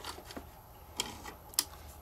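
A few light clicks, about four spread over two seconds, as hands handle the receiver and rear sight of a Vz.52 rifle.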